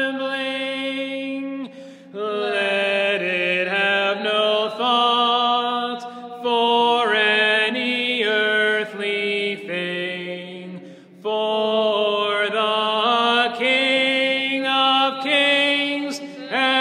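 Unaccompanied Byzantine-rite liturgical chant, voices singing long sustained phrases that step from note to note, with brief pauses between phrases.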